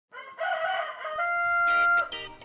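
Rooster crowing, a cock-a-doodle-doo in several parts ending in a long held note.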